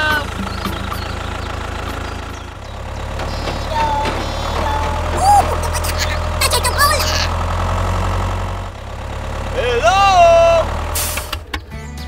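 Tractor engine idling, a steady low hum that grows louder a few seconds in and eases back about three-quarters of the way through. Short squeaky voice sounds that glide up and down break in a few times, the loudest near the end.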